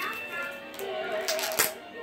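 A child's voice holding one steady hummed note for about a second, with a few light clicks from a clear plastic slime container being handled.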